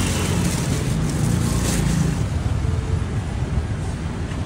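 Steady low rumble of street traffic, with no distinct event standing out.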